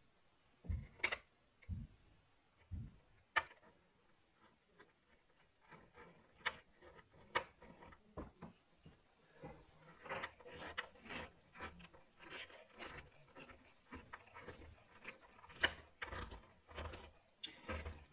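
Small hand screwdriver driving the tiny screws that hold a replacement battery in a MacBook's lower case: faint scattered clicks and scrapes of the tip on the screw heads and plastic, with a few sharper ticks and busier clicking in the second half.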